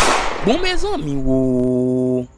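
A sharp crack-like slam with a hiss trailing off, as the two fall to the ground. About half a second in comes a short cry that rises and falls in pitch. From about a second in, a steady low buzzing tone with many overtones is held.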